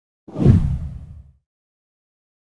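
A whoosh sound effect with a deep boom under it, swelling in suddenly and dying away within about a second: an editing transition into the channel's promo animation.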